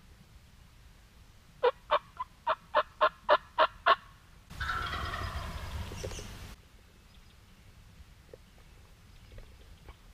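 A run of about nine short, evenly spaced turkey yelps, roughly four a second, followed by a wild turkey gobbling for about two seconds.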